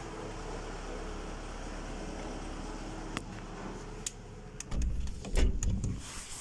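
Steady low rumble, a couple of sharp clicks after about three seconds, then loud low thumps and rubbing in the last second and a half as a handheld phone's microphone is jostled.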